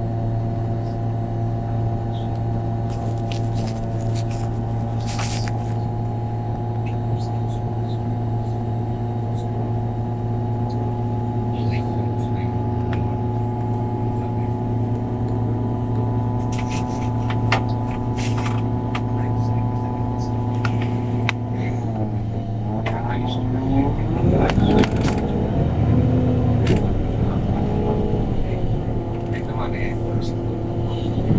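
MAN NL313F CNG city bus heard from inside the cabin, its MAN E2876 natural-gas engine idling steadily, with scattered clicks and knocks. About 22 seconds in the engine note dips and then rises unevenly and grows louder as the bus pulls away.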